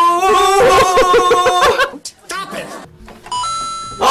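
Keyboard notes played on an M-Audio MIDI keyboard with laughter over them, then a short electronic chime near the end, stepping up once in pitch: a stream donation alert.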